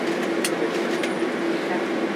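Cabin noise of a Boeing 767-300 taxiing after landing: the engines at idle give a steady hum with a constant low tone under an even rush of air. Two brief clicks come about half a second and one second in.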